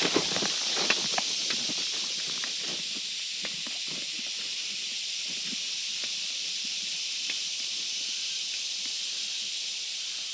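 Steady, high hiss of an insect chorus in summer woodland, with footsteps crunching through dry leaf litter that are loudest in the first seconds and grow fainter as the walker moves away.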